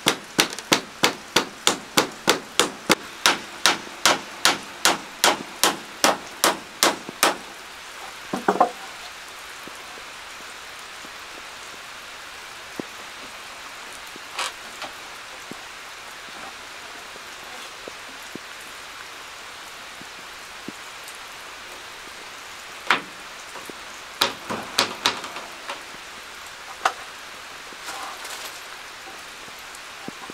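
Claw hammer driving nails into wooden wall boards: a fast, even run of blows, about three a second, for the first seven seconds, then a few single taps and a short burst of blows near the end.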